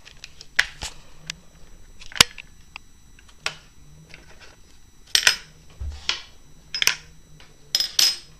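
Irregular clicks and knocks of hands handling an RC car's plastic chassis and metal drive parts while working a part loose from the motor mount, with a few sharper knocks among them.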